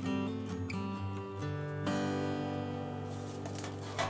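Background music: acoustic guitar playing steady, held notes that change about two seconds in.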